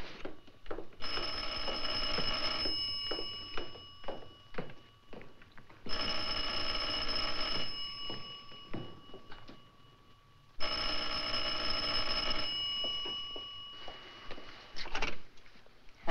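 Telephone bell ringing three times, each ring just under two seconds long, the rings coming about four and a half seconds apart.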